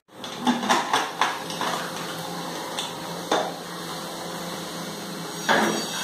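Metal kitchenware clinking and knocking: a quick run of light knocks in the first second and a half, then a single knock about three seconds in, and a longer clatter near the end.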